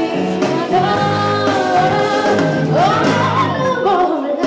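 Live rock band with electric guitars and drums playing under a woman singing long held notes, her voice swooping up in pitch near the end.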